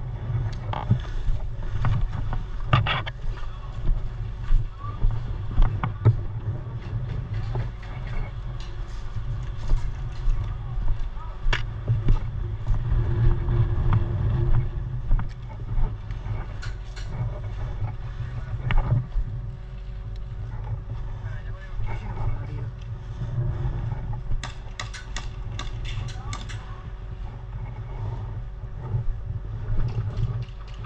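Airsoft guns firing: scattered sharp single shots, with a quick run of shots near the end, over a steady low rumble of wind on the microphone.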